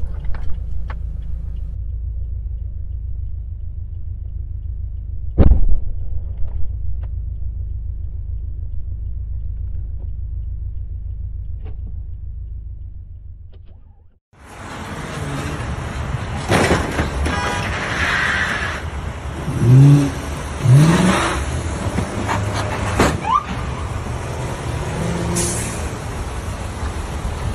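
Low, steady rumble of a car heard from inside, with one sharp loud bang about five seconds in. After an abrupt break near the middle, louder road traffic noise follows, broken by several short loud sounds.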